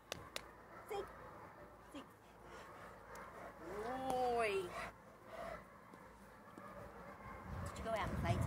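A single drawn-out vocal sound about four seconds in, lasting about a second and rising then falling in pitch, with a few faint clicks before it.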